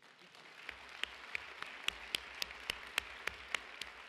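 Audience applauding, with one person's sharper claps standing out at about four a second through most of it.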